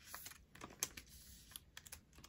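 Faint, scattered light taps and clicks of fingers pressing and sliding photocards into plastic nine-pocket binder sleeves.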